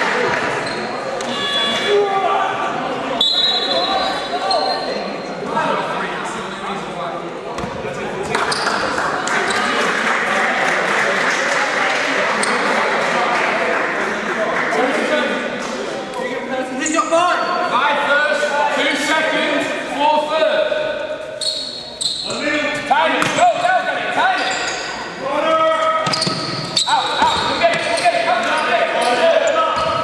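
Basketball game in a large sports hall: players and onlookers calling and shouting across the court, with a basketball bouncing on the hall floor, all ringing in the hall's echo.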